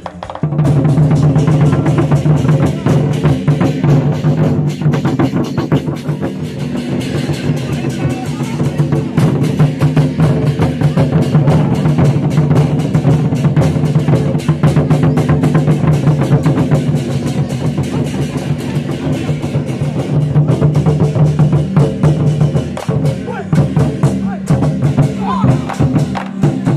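A Taiwanese war-drum troupe beating large barrel drums (tanggu) with sticks in fast, dense unison rolls, with cymbals clashing. The drumming starts suddenly about half a second in and keeps up without a break.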